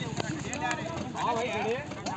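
Several men talking over one another in the background, none of it clear, with a few sharp knocks mixed in.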